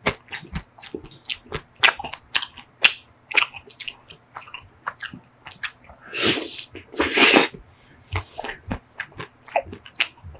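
Close-miked mouth sounds of eating a chocolate-coated Magnum ice cream bar: the chocolate shell crackling under the teeth, with wet chewing and lip smacks as many small clicks. There are two longer, louder bites about six and seven seconds in.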